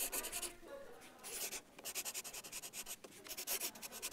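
Writing on paper by hand: quick scratchy strokes in several short spurts.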